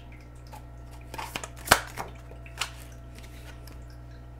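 Oracle cards being handled and drawn from a deck by hand, a few light clicks with the loudest just under two seconds in, over a low steady hum.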